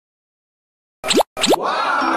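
Two quick rising 'bloop' cartoon sound effects about a second in, then a longer swelling and falling effect.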